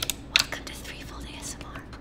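Sharp taps and clicks from fingers on the silver fluid head of a Benro BVX 18 tripod, the two loudest near the start, under soft whispering in an ASMR-style joke.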